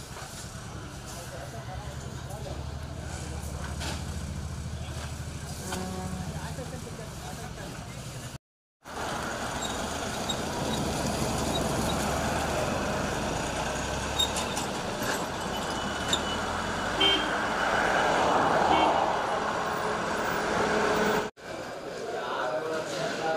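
Busy produce-market yard ambience: a truck engine running steadily under background voices, then, after a brief cut about eight seconds in, a louder, denser hubbub of voices and vehicles with a short horn toot around the middle.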